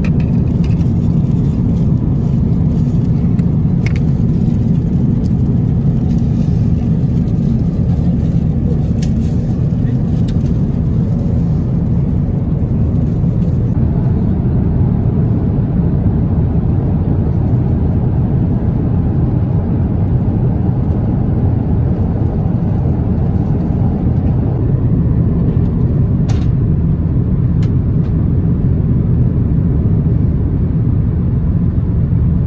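Steady low rumble of an Airbus A350-1000's cabin in flight, airflow and engine noise, with a few faint clicks.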